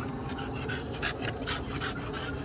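A dog panting close by, in a quick run of short, even breaths.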